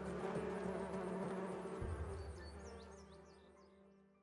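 Honeybees buzzing around an opened hive, a steady drone that fades away over the last couple of seconds.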